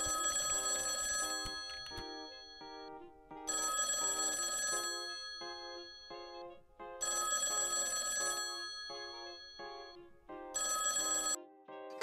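Telephone ringing four times, each ring lasting about a second and coming about every three and a half seconds, over background music with a repeating melody.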